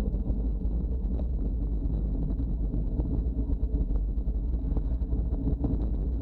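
Wind buffeting the microphone and road-bike tyres rumbling on tarmac while riding: a steady low rumble with faint scattered clicks and rattles.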